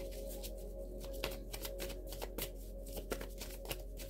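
A deck of oracle cards being shuffled by hand: a quick, irregular run of soft card clicks and flicks.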